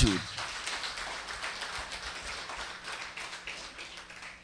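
Audience applauding: dense clapping that gradually fades away.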